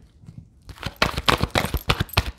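A deck of oracle cards being shuffled by hand: a quick run of papery card clicks and snaps that starts a little over half a second in.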